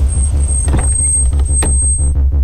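Background music score with a heavy, steady bass drone and a thin high tone held over it. Two short sharp clicks fall near the middle and near the end as a car door is opened.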